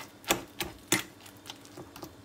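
Metal fork mashing soft cooked eggplant in a glass bowl, its tines clicking against the glass in a handful of uneven taps, two of them louder than the rest.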